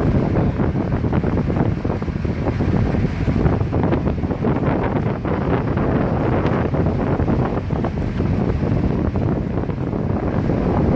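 Wind buffeting the microphone on a motorized outrigger boat under way at sea, over the steady running of the boat's engine and water rushing past the hull. The noise is loud and even throughout.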